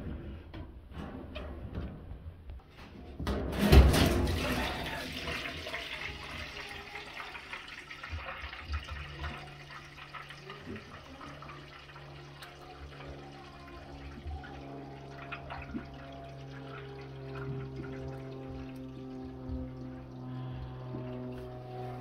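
Water gushing out of a front-load washer's opened drain hose into a small pan: a loud surge about three and a half seconds in, then a steady pouring stream. The washer has failed to drain, so its trapped water is being emptied by hand.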